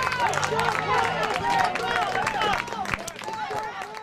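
Spectators' voices talking and calling out over one another, with scattered claps; the sound fades out near the end.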